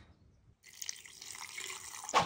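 Water poured from a jug into a blender jar of chopped tomato and onion: a faint, steady pouring that begins about half a second in.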